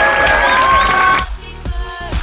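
A crowd cheering and applauding over music. A little over a second in the cheering cuts off suddenly, leaving quieter dance music with a steady beat.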